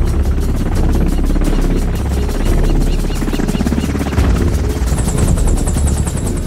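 Military helicopter rotors beating in a fast, steady chop over a low engine rumble, with film score music mixed underneath.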